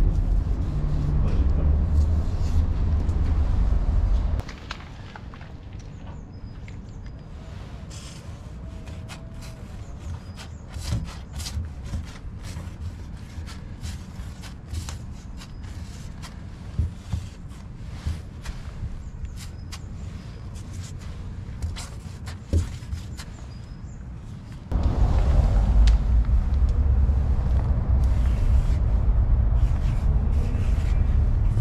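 A loud low rumble for about the first four seconds and again for the last five. In between, quieter outdoor ambience with scattered clicks and scrapes of a white-ink paint marker tip writing on a plastic barrel.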